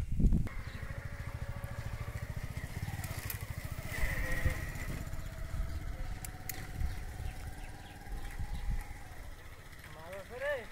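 A small engine running steadily, a fast, even low throb.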